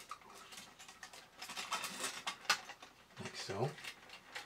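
Light clicks and scrapes of a small tool against the tin-plate body of a vintage toy robot as a metal tab is bent down, with a sharper click about two and a half seconds in. A short murmur from a voice comes near the end.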